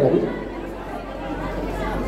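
Indistinct chatter of several voices. A louder voice trails off just as it begins.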